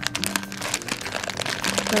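Soft plastic baby-wipes package crinkling as it is handled, a quick run of small crackles that thins out near the end, over quiet background music.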